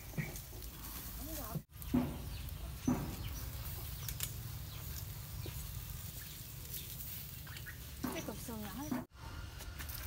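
Metal tongs moving grilled pork on a wire rack over a charcoal fire, with a few light clicks over a steady low rumble. Brief voice-like sounds come shortly after the start and again near the end.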